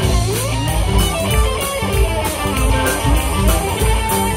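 Live blues-rock band playing an instrumental passage: an electric guitar lead with a bent note near the start, over bass, keyboard and a drum kit keeping time on the cymbals.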